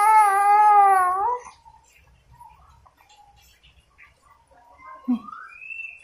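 Baby's long, high-pitched squeal held at a steady pitch, breaking off about a second and a half in. After it come only faint small sounds and a short knock near the end.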